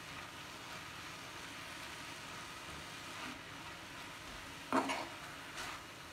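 Keerai (leafy greens) being dry-fried without oil in a kadai: a faint steady sizzle, with a spatula scraping through the greens against the pan, most plainly a little before the end.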